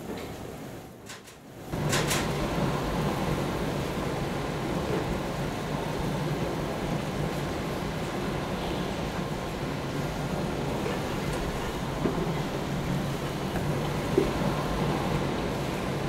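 Steady machinery noise of a snack factory's conveyor and processing lines running, with a low hum. It comes in after a quieter first second or two and holds at an even level.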